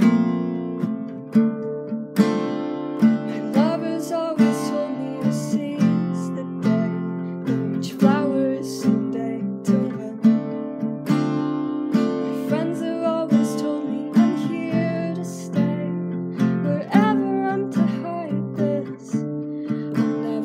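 Strummed acoustic guitar with a solo voice singing over it. The chords run throughout and the singing comes in a few seconds in.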